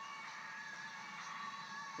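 Quiet lull: a faint steady outdoor hiss with a few faint, thin steady high tones running under it.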